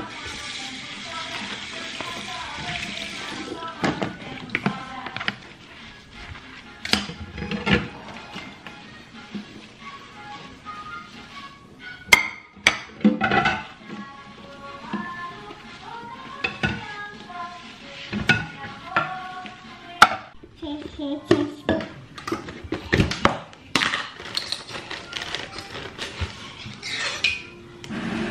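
Dishes being washed by hand at a kitchen sink: a ceramic plate and a metal saucepan knocking and clattering now and then, over background music.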